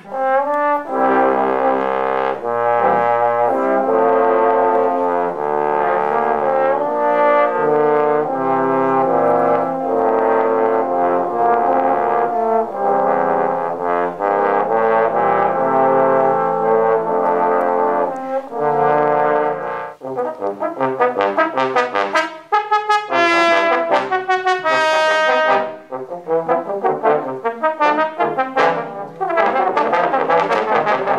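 Trombone quartet playing a film-music arrangement: long held chords in several parts for most of the time, then, about two-thirds of the way through, an abrupt change to short, detached notes.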